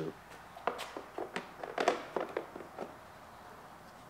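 A few light clicks and taps of plastic over the first three seconds as a rear reflector is clipped into a plastic bumper cover.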